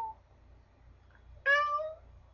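A domestic cat meowing twice: the end of one meow fades out at the start, and a second short meow comes about a second and a half in, rising slightly in pitch.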